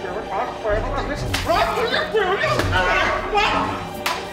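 Whooshing swings and blows of a toy lightsaber, with a man yelling and crying out, over background music with a deep, pulsing beat.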